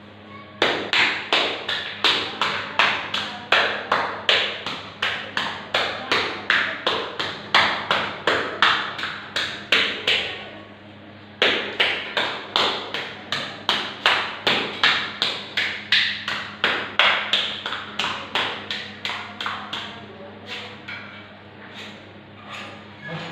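A gloved hand slapping wet wall putty on a wall in quick, even strokes, about two to three a second, to raise a textured pattern. The slapping pauses for about a second midway, then resumes and grows quieter near the end.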